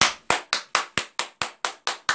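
A single pair of hands clapping in applause, steady and evenly paced at about four to five claps a second.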